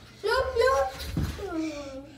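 Speech only: a voice talking from about a quarter second in, with words the recogniser did not catch.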